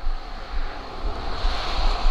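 Wind on the microphone: a steady rushing hiss with uneven low rumbling gusts.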